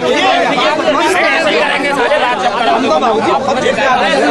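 Agitated crowd of men, many voices talking and arguing over one another at once.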